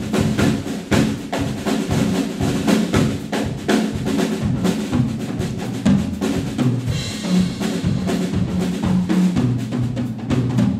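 Drum kit played with sticks in a samba rhythm: dense, steady drum and cymbal strokes over low bass notes, a jazz big band's rhythm section playing.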